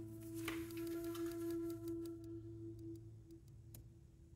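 A singing bowl struck once, ringing with a clear tone that fades slowly over about three seconds. A couple of light clicks of cards being handled sound over it.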